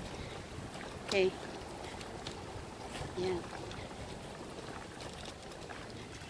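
Steady outdoor background noise, an even rush with no clear single source, under two short spoken words.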